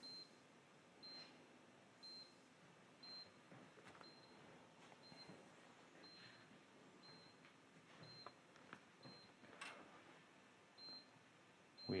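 Faint, short, high-pitched beeps about once a second from an HT Instruments PV ISOTEST photovoltaic insulation tester. The beeping signals that a measurement is in progress with the 1500 V test voltage applied.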